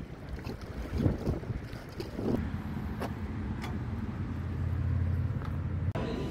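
Wind buffeting a phone microphone on a riverside quay above choppy river water, with a few gusty bumps and a low rumble that builds over the last two seconds.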